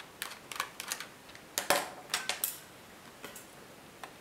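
Irregular small clicks and taps of a screwdriver working a screw in the plastic bottom case of a netbook, with knocks from handling the case, in small clusters; the loudest click comes a little under halfway through.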